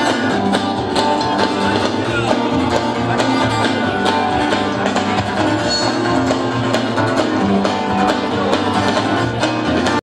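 Live band playing an instrumental passage without singing: strummed acoustic guitars and plucked strings over electric bass and a steady drum beat.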